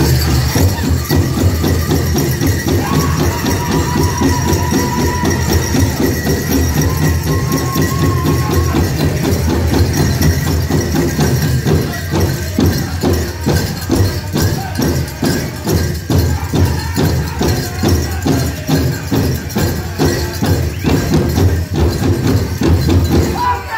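Powwow drum group playing a fast fancy-dance song: a big drum beaten in fast, even strokes under high-pitched singing, with the jingle of dancers' bells over it. The drumbeats stand out more plainly in the second half.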